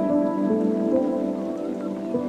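Soft background music of sustained notes that change slowly, laid over the vlog footage.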